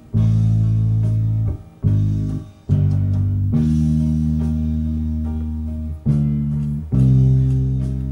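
Bass guitar playing slow, long held notes, soloed from a multitrack tape recording, with the note changing about every second or two. The bass sound is a blend of three recordings of the same part: direct from the guitar, from the amp, and from the speaker into the room.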